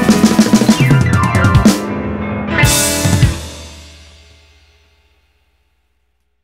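Ending of a blues band song: a rapid drum fill, then a final full-band hit with the cymbals and chord ringing out and dying away to silence about five seconds in.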